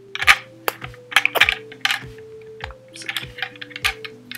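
Hard plastic toy pieces clicking and knocking in an irregular run as a Playmobil 1.2.3 sleigh, reindeer and figure are handled and pressed together, over quiet background music.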